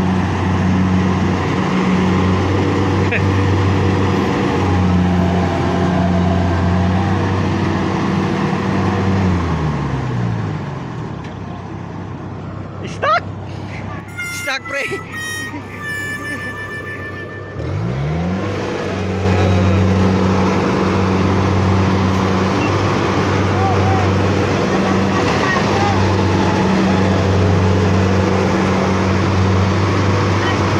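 Diesel engine of a rice combine harvester bogged in paddy mud, running steadily; about ten seconds in its note slides down and fades, a few short high-pitched tones sound in the lull, and about eight seconds later the engine note climbs back up and runs steadily again.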